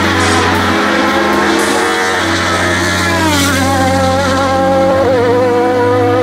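Race-car engine of a hill-climb sports prototype running at high revs, its pitch dropping sharply twice, near the start and about three seconds in, with background music.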